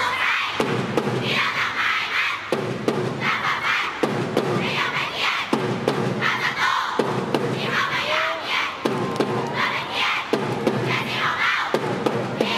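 A school cheering section chanting and shouting in unison over drum beats, in short rhythmic phrases that repeat about every second and a half with a brief break between them.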